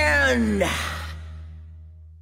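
The last held vocal note of a rock song slides down in pitch and breaks off in a breathy sigh about half a second in. A low sustained bass note fades out underneath as the track ends.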